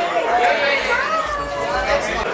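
Indistinct chatter: several voices talking over one another, none clear enough to make out, with a low rumble in the second half.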